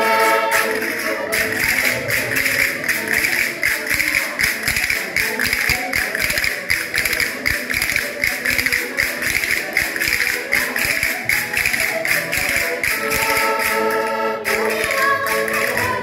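Diatonic button accordion playing a folk tune over a steady beat of sharp taps, with group singing at the start and coming back in near the end.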